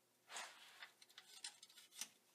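Near silence: faint handling noise, a brief soft rustle followed by a few small faint ticks.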